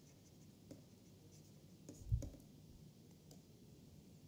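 Faint tapping and scratching of a stylus writing on a tablet screen, with a brief low thud about two seconds in.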